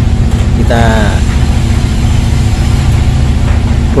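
Steady low hum of a running electric motor in a woodworking shop, unchanging throughout.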